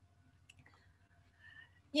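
A pause in the talk with quiet room tone, broken by a single faint click about half a second in.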